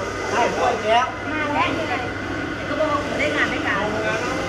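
Several people talking at once in a loose, overlapping chatter, with a faint steady hum underneath.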